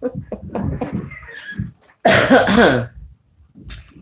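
A woman coughs once about halfway through: a short, loud burst with a falling voiced pitch, after a second or two of quieter throat and breath sounds.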